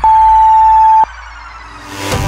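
Workout interval timer beep: one long, steady, high electronic tone lasting about a second that ends abruptly, the final tone of a countdown marking the change of interval. Electronic music plays quietly beneath it.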